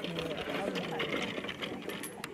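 Indistinct voices of several people talking in the background, overlapping throughout.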